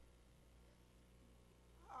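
Near silence: room tone with a faint, steady low hum, and a woman's voice starting at the very end.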